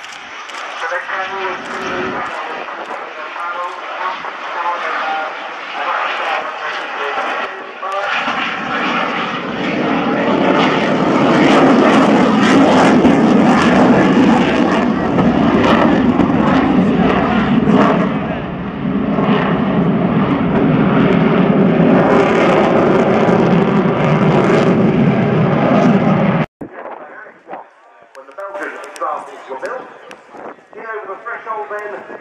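Fighter jet engine noise during a display flight. It is fainter under voices at first, swells about eight seconds in, stays loud, and cuts off abruptly a few seconds before the end.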